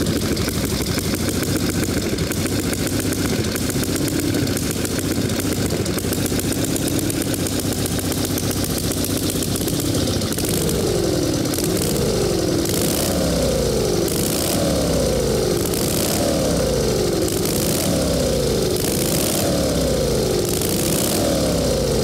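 Reading Standard board-track racer's V-twin engine running on its stand through open exhaust stubs, with a rapid, even firing pulse. From about halfway on it is revved up and down over and over, about every second and a half. Its carburettor has no throttle, so engine speed is worked by the decompressor and timing control on the right grip.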